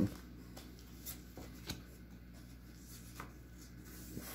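Faint handling of Pokémon trading cards: a few soft ticks and rustles as the cards are sorted by hand, over a low steady hum.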